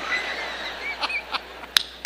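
A congregation laughing together in a large hall, a mass of many voices that slowly dies down, with two sharp clicks near the end.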